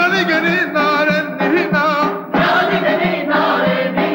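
Armenian folk ensemble singing: a group of voices with a lead singer over a steady low drone and a regular drum beat. The voices break off briefly a little after two seconds in.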